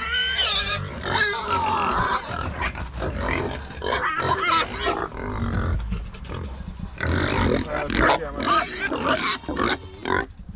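Pigs and piglets squealing in a pen: high, wavering calls one after another, with short breaks between them.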